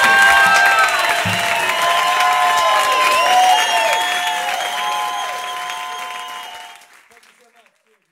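Live audience applauding and cheering, many voices whooping over the clapping, fading out about seven seconds in.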